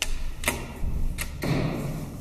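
Several sharp mechanical clicks and clacks, about four in under two seconds, around the landing door of a 1962 KONE traction elevator. A low hum starts near the end.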